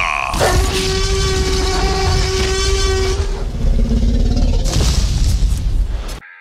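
Radio station ID sweeper made of produced sound effects: a deep rumbling boom under a long held tone, then a lower held tone, the whole effect cutting off sharply at the end.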